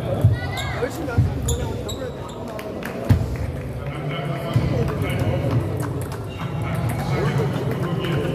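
Background chatter of many voices with scattered sharp clicks of celluloid table-tennis balls hitting tables and bats in rallies at the surrounding tables; a heavier thump about three seconds in.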